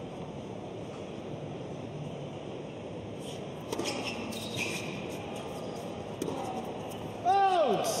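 Tennis rally in an indoor hall: several sharp racket-on-ball hits and bounces from about three seconds in, over a steady hall hum. About seven seconds in, a line judge shouts a loud 'out' call that falls in pitch, ending the point.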